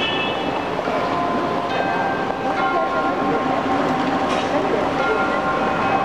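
A large outdoor karakuri clock's chime playing a slow tune of bell-like notes, a new note about every second, each ringing on into the next, over city street noise. The clock's mechanical figures are out of order, so only the chime sounds.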